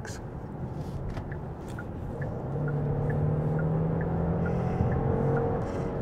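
A 3.5-litre turbocharged V6 with electric supercharger, heard from inside the cabin as the car accelerates: under the road rumble, a low, steady engine drone swells about two and a half seconds in and holds. The build comes after a noticeable delay, a lag put down as much to the transmission as to the engine.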